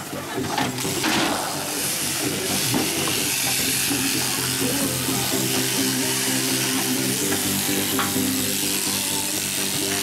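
Electric sheep-shearing handpiece buzzing steadily as a merino ewe is crutched, with background music.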